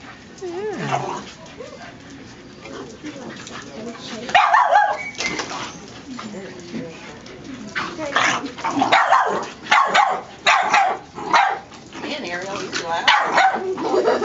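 Young puppy barking in short bursts: once about four seconds in, a run of barks between about eight and eleven seconds, and again near the end.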